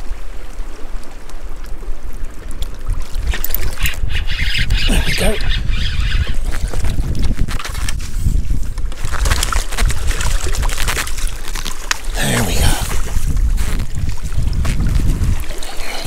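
Wind buffeting the microphone as a steady low rumble, with bursts of water splashing and sloshing as a landing net is dipped into the sea, about four seconds in and again after the middle.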